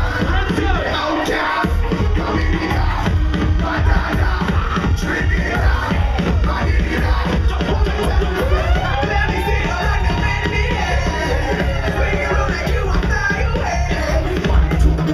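Loud club music with a heavy, steady bass beat, playing over a nightclub crowd. About eight and a half seconds in, a sliding tone rises and then holds.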